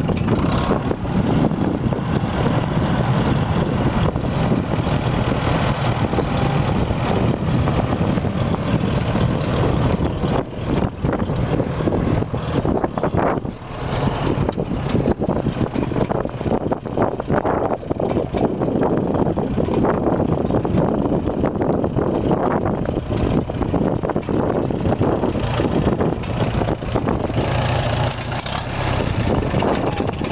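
1954 Farmall Super M-TA tractor's four-cylinder engine running steadily, with an even low exhaust beat.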